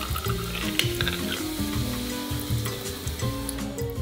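Warm water poured steadily from a small tin into a glass blender jar onto chunks of canned tuna.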